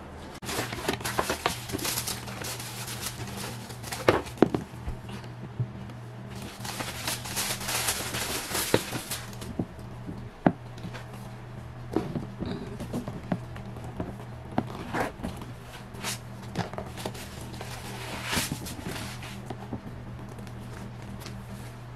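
Rustling of tissue paper and a fabric dust bag as a pair of leather stiletto ankle boots is unpacked from a cardboard box, in several spells of rustling. A few sharp knocks in between come from the boots and box being handled and set down on a wooden floor.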